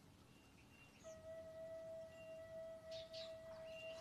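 A faint, steady held tone at one fixed pitch starts suddenly about a second in and holds without wavering, like a sustained musical note.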